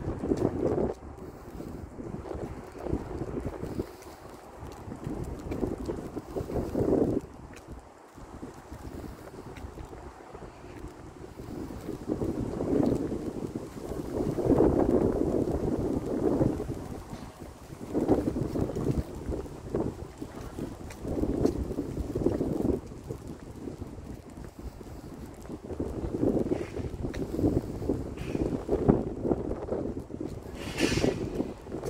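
Wind buffeting the microphone: a low rushing noise that swells and fades in uneven gusts every few seconds.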